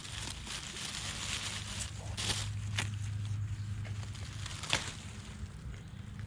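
Burdock stalks being cut and handled among dry leaves, three short sharp sounds over a steady low background of road noise.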